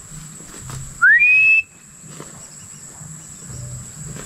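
A single clear whistle, about half a second long, rising in pitch and then held, about a second in. A steady high thin tone runs underneath.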